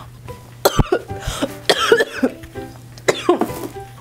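A woman coughing in three short fits, set off by breathing in the fumes of hairspray sprayed on her face.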